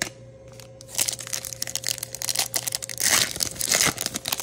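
Foil wrapper of a Topps Chrome card pack crinkling and being torn open by hand, starting about a second in. The rip is loudest near the end.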